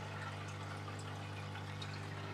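Aquarium filter running: a steady low hum with a faint watery hiss over it.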